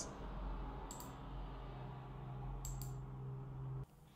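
Faint room tone with a steady low hum, and two short mouse clicks, one about a second in and one just before three seconds.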